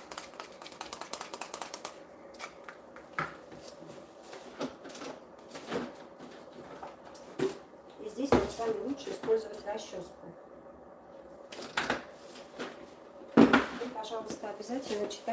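Plastic tint brush stirring hair colour in a plastic tint bowl, a quick run of clicking and scraping strokes during the first couple of seconds. After that, scattered clicks and clatters of salon items being handled, with one loud knock near the end.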